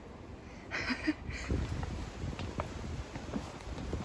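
Footsteps on stone trail steps with rustling and wind buffeting the microphone, plus a short breathy sound about a second in.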